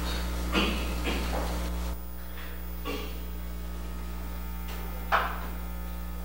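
Steady electrical mains hum from the sound system, with a few short knocks and rustles scattered through it, the sharpest about five seconds in. About two seconds in, the hum's tone changes abruptly as the audio feed switches.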